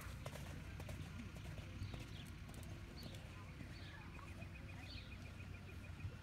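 Faint hoofbeats of a horse cantering over arena sand, thinning out as the horse moves off, with small high chirps and a fine ticking trill in the second half.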